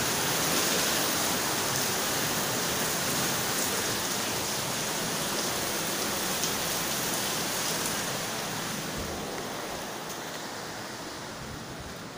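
Heavy rain, a steady hiss that fades over the last few seconds.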